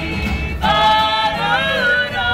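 A group of voices singing together unaccompanied, holding long notes that slide in pitch, louder from about half a second in.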